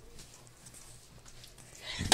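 Quiet room tone with faint handling noise from a phone being moved about, a rustle swelling just before the end.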